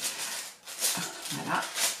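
Tissue-paper wrapping crinkling and rustling as a make-up compact is unwrapped by hand, with two louder crackles about a second apart.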